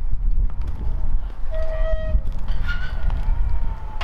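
Wind rumbling and buffeting on the microphone, with a few short high squeaky tones around the middle and a faint drawn-out tone near the end.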